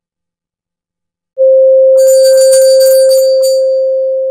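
An electronic sound effect: a loud, steady pure tone starts suddenly about a second and a half in. About half a second later a brief glittering chime shimmer rings high above it. The shimmer dies away after about a second and a half, and the tone then slowly fades.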